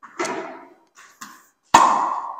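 Tennis racket striking a ball in a topspin forehand near the end: a sharp, loud pop that rings on in the small room. A softer knock about a quarter of a second in.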